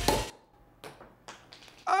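Champagne bottle being sabered: a few short, sharp cracks and clicks as the blade is struck along the glass neck and the top breaks away with the cork. The backing music cuts off at the start, and a man's exclamation of surprise comes in at the very end.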